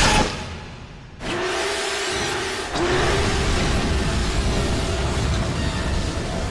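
Film soundtrack of action sound effects: a loud hit that fades out, then, after a sudden cut about a second in, a dense rumbling roar under music that gets louder near three seconds in.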